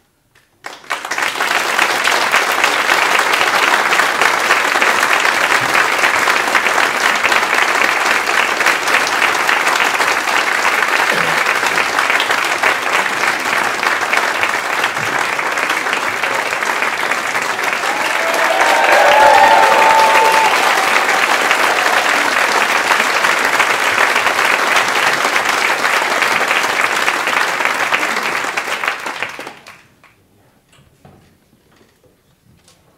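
Audience applauding: dense, steady clapping that starts about a second in, holds level throughout and cuts off just before the end.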